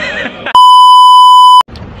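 A censor bleep laid over speech: one loud, steady beep at a fixed pitch lasting about a second, starting and stopping abruptly, covering a word that has been cut out. A few words come just before it and a laugh just after.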